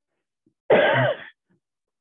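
A woman coughing to clear her throat: one short, loud burst a little under a second in.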